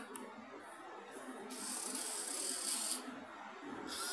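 Small geared DC motor of a robot arm's gripper whirring for about a second and a half as the claw closes to grip an object.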